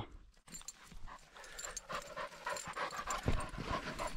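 English setter panting as she carries a retrieved chukar in to hand, the breathing quiet at first and growing louder toward the end.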